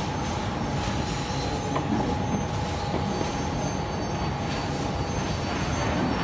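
Industrial bakery production-line machinery running: a steady mechanical din with a faint, even whine.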